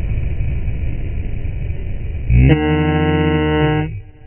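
Rushing road and wind noise as a car passes close by. A little past halfway a loud horn blast starts and holds one steady pitch for about a second and a half.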